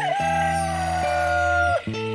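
A rooster crowing, its long drawn-out final note held for nearly two seconds and falling slightly in pitch before it breaks off, over music.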